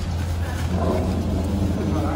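A steady low rumble of a running engine or motor, unchanging throughout, with faint voices over it.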